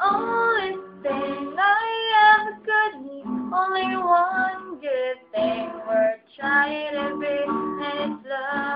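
A woman singing with her own acoustic guitar accompaniment. The voice carries the melody in short sung phrases with brief gaps between them.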